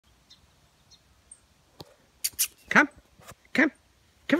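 A German Shepherd–Siberian Husky mix dog giving two short barks, a little under a second apart, in the second half. Faint bird chirps come before them.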